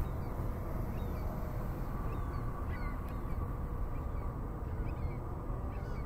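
Steady low background rumble with a few faint, short high chirps.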